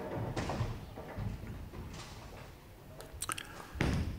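Quiet bowling-alley room sound during a bowler's approach, then a couple of sharp knocks near the end as the bowling ball is released onto the wooden lane and starts rolling.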